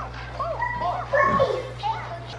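A toddler babbling: several short, high-pitched vocal sounds.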